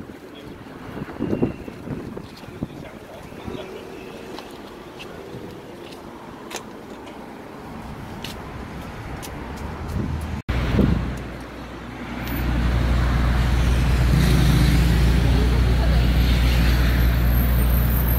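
Street ambience with passing traffic and a few voices. After a cut, a loud, steady low engine rumble from a large vehicle running close by fills the last third.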